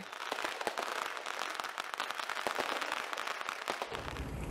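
A string of firecrackers going off in a rapid, dense crackle of sharp pops.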